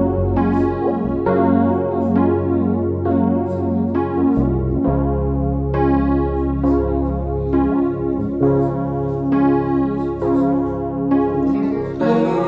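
Instrumental passage of a pop song: piano chords struck in a steady repeating pulse over low held bass notes that shift a few times.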